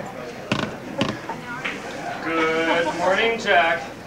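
Two sharp knocks about half a second apart, then indistinct voices in the second half, louder than the knocks.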